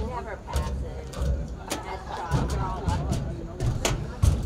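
Indistinct talking from people in the crowd, with several sharp clicks scattered through it over a steady low rumble.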